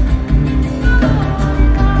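Live band music with no singing: acoustic guitar playing over drums, a short instrumental gap between two sung lines.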